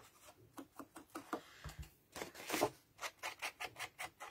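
Cardstock and small crafting tools handled on a tabletop: irregular soft rustles and light taps, loudest a little after two seconds in.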